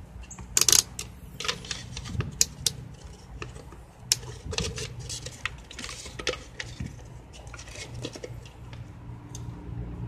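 Irregular light clicks and knocks of small objects being handled and set down on a cluttered workbench: test leads, clips and a paper cup, with a few sharper clacks in the first seconds.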